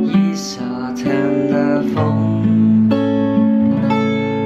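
Steel-string acoustic guitar played fingerstyle: picked chord arpeggios over a bass line that steps down from chord to chord, the descending bass of slash chords like G/B and Am7/G.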